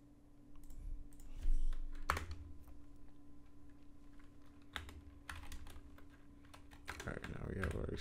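Typing on a computer keyboard: irregular keystrokes, some in quick runs, as code is entered.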